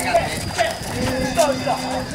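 A group of men's voices chanting together, sliding between notes and then holding one long steady note from about a second in, with a few sharp knocks or claps among them.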